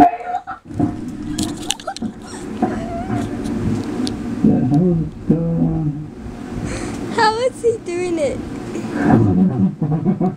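Shouting voices from a video clip played loudly through a small portable speaker, with a high, wavering yell about seven seconds in.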